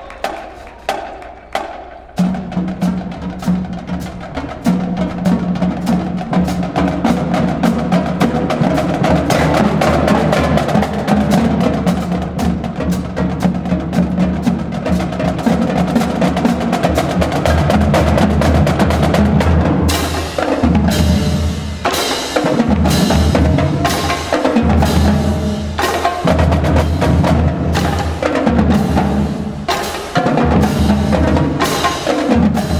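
A marching drumline of snare drums, multi-drum tenors and bass drums performing: a few sparse sharp hits first, then about two seconds in the full line enters with rapid continuous snare rolls over steady bass drum notes. From about twenty seconds in it breaks into separate loud accented hits, with the bass drums playing falling notes between them.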